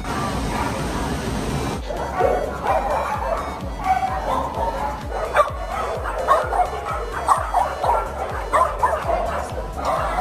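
Shelter dogs barking and yipping repeatedly, many short sharp barks starting about two seconds in, over background music.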